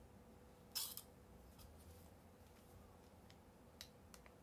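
Near silence with a faint steady hum, broken by a short burst of noise about a second in and a few light clicks, the last near the end, as a curling iron is handled and clamped onto hair.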